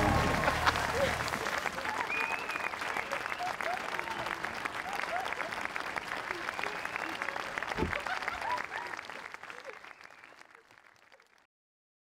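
Audience applauding, with scattered cheers and whoops, fading out over the last few seconds.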